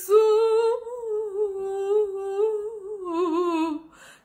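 A woman singing unaccompanied, holding one long note with a slight waver, then ornamenting it with quick turns near the end before breaking off.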